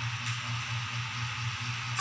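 Steady hiss with a low hum underneath, unbroken through the pause: the background noise of the broadcast audio.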